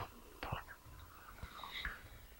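A pause in speech: faint room tone with a soft click about half a second in and a quiet breathy sound near the end, like a breath on a headset microphone.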